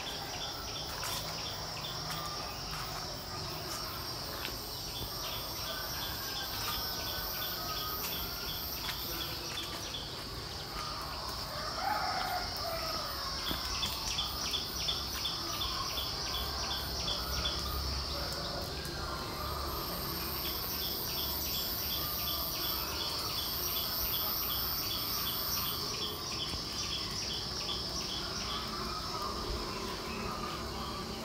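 Insects calling in the trees: a steady high-pitched buzz, with trains of rapid regular ticks that start and stop in bursts of a few seconds. A few faint bird calls come through underneath.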